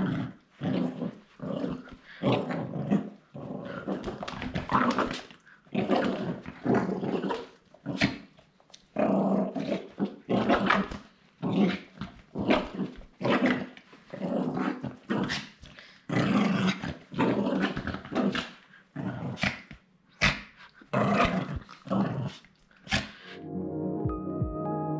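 A small dog play-growling in repeated short bursts with gaps between, some of them breaking into yips.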